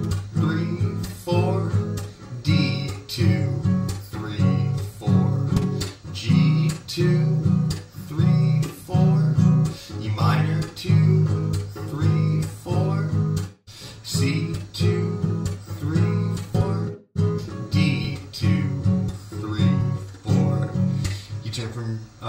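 Acoustic guitar strummed in a steady rhythm, about two strums a second, working through the chorus progression of G, E minor, C and D, each chord held for four beats.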